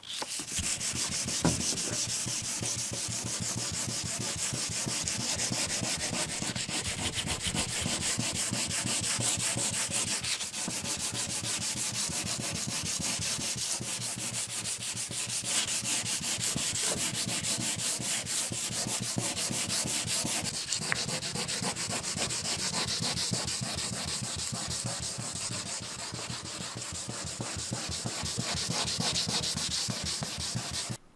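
800-grit sandpaper wet-sanding by hand over the peeling clear coat of a truck fender: a steady run of quick back-and-forth rasping strokes on the wet paint.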